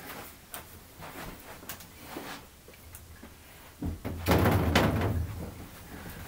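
A large plexiglass sheet being handled: a few faint ticks and rustles, then about four seconds in a louder rumbling, rubbing sound lasting over a second as the sheet is moved or flexes.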